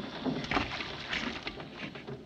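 Sea water lapping and splashing irregularly against the side of a small lifeboat.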